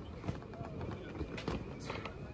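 Combat boots stepping on wooden planks: a few separate knocks as a trainee walks across the beams of an obstacle.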